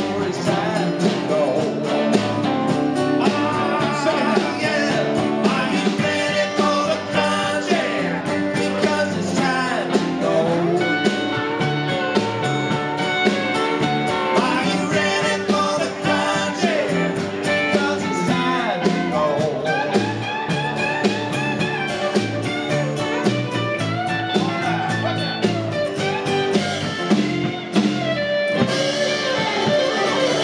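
Live country-rock band playing: strummed acoustic guitar, electric lead guitar, electric bass and drums, with a man singing.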